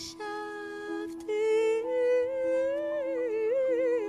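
A woman humming a wordless melody into a microphone over a steady held note underneath. A short note first, then from about a second in a longer line that climbs and wavers near the end.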